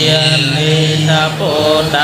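Khmer Theravada Buddhist monks chanting Pali verses in a steady, near-monotone recitation, held on a sustained low reciting note with short rises and falls on the syllables.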